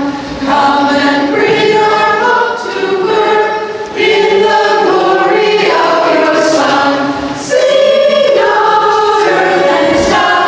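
Choir singing a closing hymn in held, sustained notes, phrase by phrase, with short breaks between lines about four seconds in and again past seven seconds.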